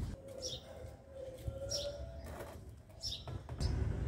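A small bird chirping: short high chirps repeated about every second and a half, three times.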